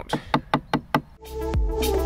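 A claw hammer striking the handle of a wood chisel in quick strokes, about five knocks in the first second, chiselling out the corners of a routed timber frame. Background music with a steady beat comes in just over a second in.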